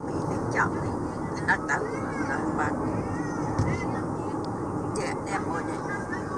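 Steady road and engine noise inside a moving car's cabin at freeway speed, with high, sliding voice sounds over it.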